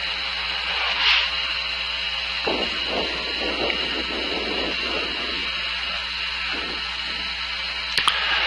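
Steady static hiss and low hum of an open intercom line, with a brief swell about a second in.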